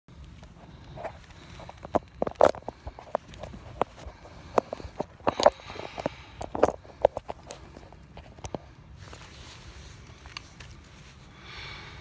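Handling noise on a phone's microphone: irregular knocks, scrapes and clothing rustle as the phone is carried and set down, with a few footsteps. The knocks thin out from about nine seconds in.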